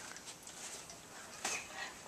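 Faint rustling and shuffling of two people moving about as they spar, with a short soft sound about one and a half seconds in.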